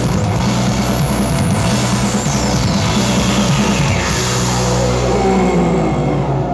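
Live rock band playing loud through a PA: drum kit, electric guitars and keyboard. About four seconds in the cymbals and high end drop away, leaving low notes ringing.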